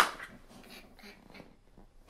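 A man's helpless, breathless laughter: a loud burst at the start, then quiet breathy gasps that trail off.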